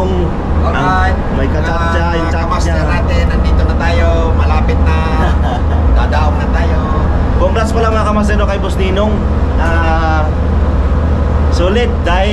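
Steady low drone of a roll-on/roll-off ferry's engines running, heard from inside the ship's steel stairwell, under people talking.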